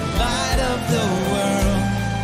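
A live worship band playing a song in the key of C: electric guitars, acoustic guitar and drums, with a melody sung or played that glides up and down over the full band.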